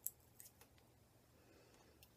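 Near silence broken by small clicks of a plastic screw cap being twisted on a small toner bottle: one sharp click at the start, then two or three fainter ones within the first second.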